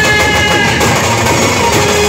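A village brass band playing live: a held, sustained melody line over steady hand-drum rhythm, loud and continuous.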